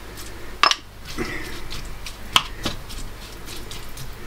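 Raw diced chicken thigh being tipped from a bowl into a non-stick frying pan and pushed about, with a few sharp clicks and knocks of bowl and utensil against the pan, the loudest a little under a second in.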